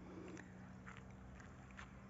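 Near silence, with a faint low steady hum and a few faint ticks.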